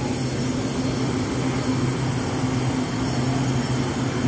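Two EMU800-series electric multiple units standing at an underground station platform, giving a steady low hum over an even wash of noise.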